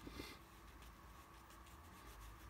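Near silence, with the faint rub of a flat brush dabbing paint onto watercolour paper.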